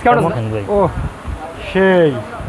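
A man's voice speaking, with no other sound standing out.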